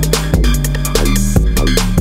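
Electronic dance music from a DJ mix: a heavy kick drum, a deep bass line that steps to new notes about halfway through, and fast ticking hi-hats.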